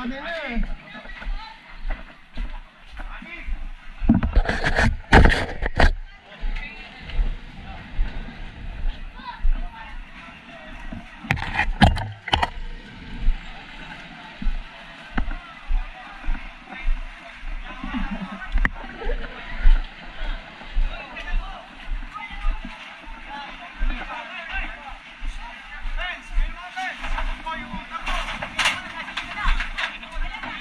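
Fire-ground bustle heard from a helmet-mounted camera on a walking firefighter: regular low thuds of the wearer's steps and jolts under a steady mix of indistinct voices. There are two loud bursts of rushing noise, one a few seconds in and another around twelve seconds.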